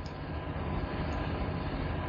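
Steady low rumbling background noise with no distinct events, growing slowly louder.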